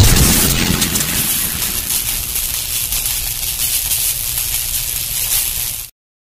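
Logo sting sound effect: a loud hit at the start, then a steady hissing, rumbling wash that cuts off suddenly just before the end.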